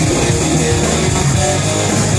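Live band playing loud amplified rock-style music led by electric guitar, with drums and bass underneath, filling a reverberant room.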